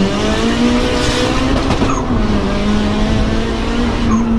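Turbocharged Honda Civic engine heard from inside its stripped, roll-caged cabin, rising in pitch under acceleration, then dropping a little about two seconds in and holding steady. Road and wind noise run beneath it.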